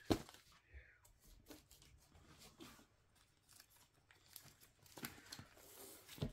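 Faint rustling and crinkling of album packaging being handled, with a sharp click right at the start and a louder rustle about five seconds in.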